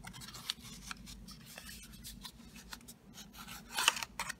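Paperboard box being opened by hand and its white cardboard insert slid out: a run of small scrapes, rubs and clicks of card on card, with a louder rustle near the end.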